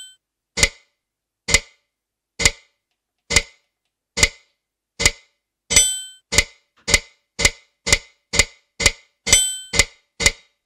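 Built-in electronic metronome of a Kurtzman K650 digital piano ticking steadily, about one click a second, then about two clicks a second from a little past halfway as its setting is changed with the panel buttons. Now and then a brighter, ringing accented click marks the start of a bar.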